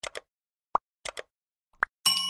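Cartoon pop and click sound effects: a quick pair of clicks, then a short pop, another pair of clicks, and a higher-pitched pop near the end.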